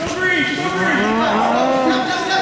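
Several spectators yelling long, drawn-out shouts at the same time, their voices overlapping and sliding in pitch, beginning a moment in and held for nearly two seconds.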